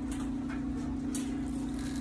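Scent booster granules poured from the bottle into its plastic measuring cap, a faint dry trickle, over a steady low hum.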